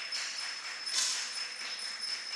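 Quiet shooting-hall room tone: a steady high-pitched whine over a faint hiss, with one brief soft burst of high, hissy noise about a second in.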